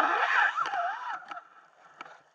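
Underwater noise as the speared fish is handled against the speargun: a loud rush that fades early on, then a wavering squeal that rises and falls several times before dying away.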